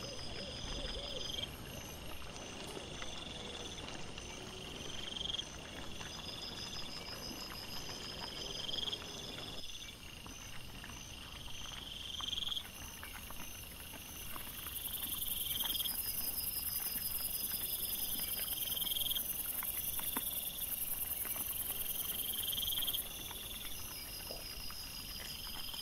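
Night insects such as crickets chirping in a steady repeating rhythm, with low rustling in the first half. Partway through, a high steady insect buzz joins in and drops out shortly before the end.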